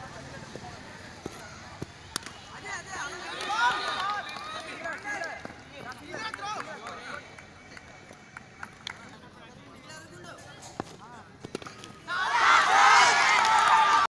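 Boys' voices calling across an open cricket field, faint at first. About twelve seconds in comes a loud burst of several voices shouting together.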